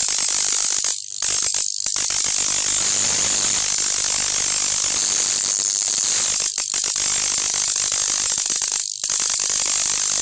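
High-voltage arc from a 75 kV X-ray transformer, run on about 40 V through ballast coils, jumping from its output terminal to a copper wire: a loud, steady hissing buzz over a low mains hum. The arc briefly drops out about a second in, again just before two seconds, and twice more later on.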